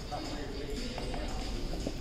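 Footsteps of a person walking across a hard tiled floor, a few irregular steps.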